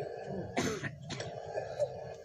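A man's brief throat-clearing, once, about half a second in.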